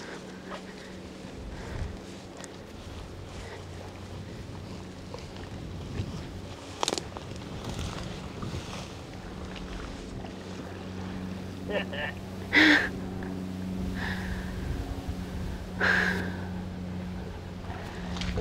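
A steady low motor hum runs under the scene, with a sharp click about seven seconds in and a short laugh around twelve seconds.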